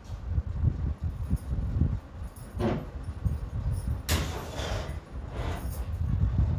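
Pencil lead scratching on drawing paper along the edge of a plastic ruler while ruling a grid line: three short strokes, about two and a half, four and five and a half seconds in, the middle one the loudest. A low rumble runs underneath throughout.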